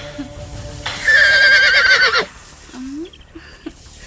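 A loud, high-pitched quavering cry, its pitch wobbling rapidly, starting about a second in and lasting just over a second, with short bits of speech around it.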